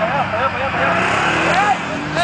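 ATV engine running steadily as the quad drives past close by, with people's voices calling out over it.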